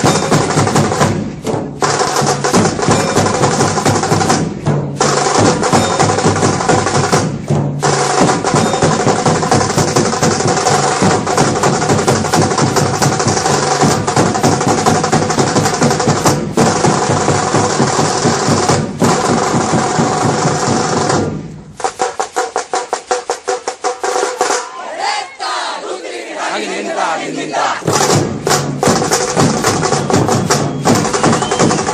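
Loud procession music with heavy drumming. About two-thirds of the way through, the bass drops out and a fast run of sharp drum strokes carries on for several seconds before the full music returns.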